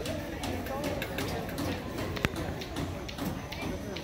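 Indistinct voices of people talking, with scattered light taps and one sharp click a little past halfway.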